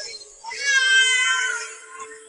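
A long, high, wavering cry that swells about half a second in and falls away near the end, over background music with a steady held tone.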